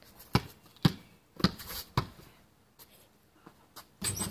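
Basketball dribbled on a concrete driveway: four bounces about half a second apart, then the dribbling stops.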